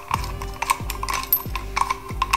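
Small metallic clicks of a socket and extension turning a steel bolt by hand as it threads in, over background music with a steady beat.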